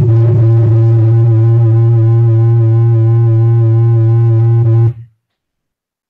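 A loud, steady, distorted low electronic tone with a buzzy stack of overtones, from a sine wave generated by a LabVIEW program and played through the computer's speakers. It cuts off suddenly about five seconds in, when the program is stopped.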